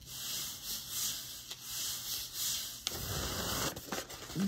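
A hand rubbing a sheet of paper flat against an inked gel printing plate in repeated strokes, pressing off a ghost print to clean the plate.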